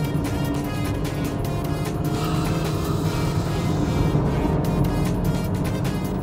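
Maruti Suzuki Swift's K12 1.2-litre four-cylinder petrol engine running steadily as the car drives, under background music.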